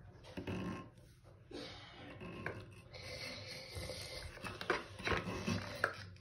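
Faint rubbing and a few light knocks from hands handling a water-filled latex balloon where its neck is stretched over a bathroom faucet, with the tap turned off. The knocks come mostly in the last couple of seconds.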